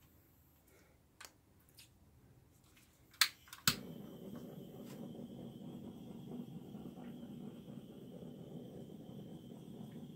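Butane torch clicked twice to light, the second click catching, then its flame hissing steadily as it is held over the wet silicone-laced acrylic pour paint. A few faint handling clicks come before it.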